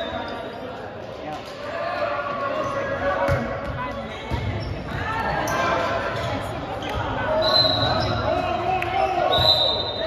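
A volleyball rally in a gym: the ball is served and struck and hits the floor, while players and spectators call out, all echoing in the large hall. Short high-pitched tones sound near the end.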